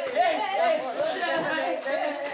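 Several young people talking over one another: overlapping chatter with no single clear speaker.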